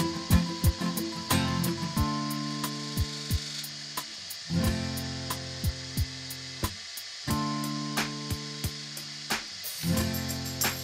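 Background music: sustained chords that change every couple of seconds over a steady beat.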